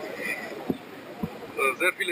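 A man's voice speaking German, starting again near the end after a short pause; the pause holds faint background noise and two soft low thumps.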